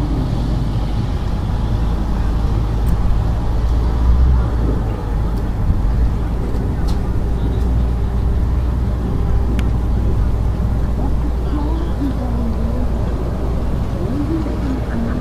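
Steady low outdoor rumble with faint, distant voices now and then.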